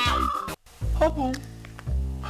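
Bird-call sound effects: a held pitched call at the start and a single falling call about a second in, over a low steady hum.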